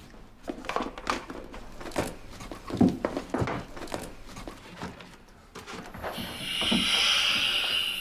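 Light clicks and knocks of a face mask and its tubing being handled, then about six seconds in a steady hiss of MEOPA (nitrous oxide–oxygen mix) gas flowing through the mask as the patient starts breathing it.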